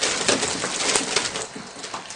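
Thick slime pouring and splattering over a seated woman's head and down onto her clothes and lap. It is a wet, noisy rush that eases off about one and a half seconds in.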